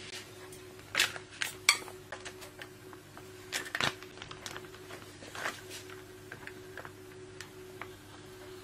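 Buyounger A4 laminator running with a steady low hum as a laminating pouch is fed in and drawn through its rollers. Sharp plastic rustles and ticks come from the pouch being handled, the loudest about two seconds in and near four seconds in.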